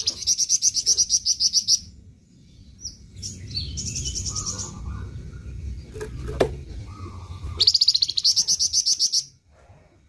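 Caged flamboyan songbird singing three bursts of a fast, high trill of rapidly repeated notes, each lasting one to two seconds, the first and last loudest. A single sharp click falls between the second and third bursts.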